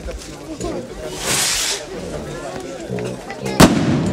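A festival skyrocket firework: a hissing rush as it goes up about a second in, then a single sharp, loud bang as it bursts near the end, over a crowd chattering.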